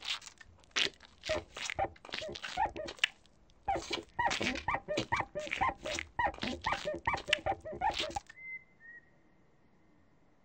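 Quick run of short, high, squeaky nonsense vocal sounds from a children's-TV character, several a second, stopping about eight seconds in. A faint steady high tone is left after that.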